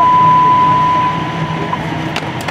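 A steady single-pitched dispatch radio alert tone that cuts off near the end, over a low steady rumble.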